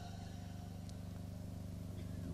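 Faint steady low hum with an even buzz, the background noise of the hall and its microphone system between spoken sentences.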